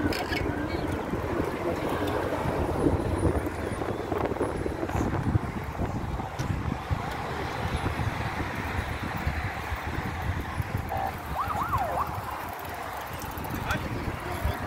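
Wind buffeting the microphone of a moving bicycle rider, over the indistinct chatter of a large group of cyclists riding together. A brief rising and falling tone sounds a little past the middle.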